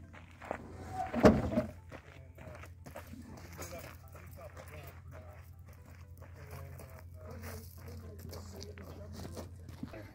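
A loud metal clank about a second in as a steel lattice tower section is slid off a pickup bed, then footsteps on gravel as it is carried, over a steady low hum and faint talk.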